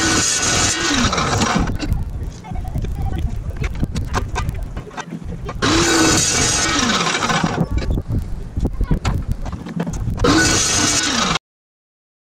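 Metal-cutting chop saw making three short cuts through steel, one after another: each time the motor whines up, the blade cuts with a harsh, bright noise for a second or so, and the motor runs down with a falling whine. Clicks and handling knocks come between the cuts.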